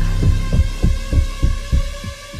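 Heartbeat sound effect: a run of short, low thumps that drop in pitch, about three a second, over a steady drone.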